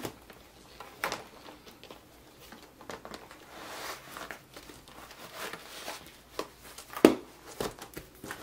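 A disc-bound paper planner and its plastic cover being handled and slid into a zippered planner case: soft rustling and sliding of paper and plastic, with a few light knocks, the sharpest about seven seconds in.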